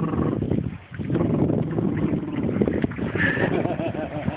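Water sloshing and splashing around a small inflatable boat as an adult wades alongside it, with a baby's short squealing vocal sounds about three seconds in.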